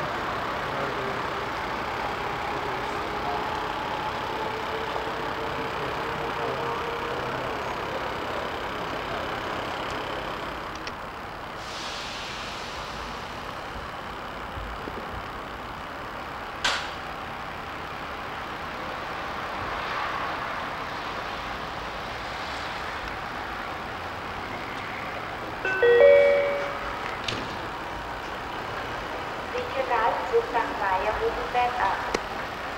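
An electric train approaching through the station, a steady rumble with a faint gliding whine that eases off about ten seconds in. About 26 s in, a short ringing station public-address chime sounds, the loudest thing heard, the signal that an announcement follows. A voice announcement begins right at the end.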